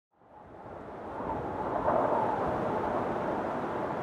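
Steady rushing noise that fades in over the first second and a half, then holds even.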